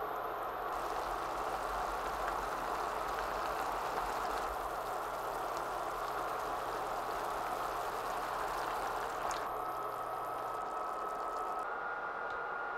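Pork belly, tofu and zucchini sizzling in a shallow broth on a griddle pan: a steady frying hiss with faint crackles, and a thin steady tone coming in near the end.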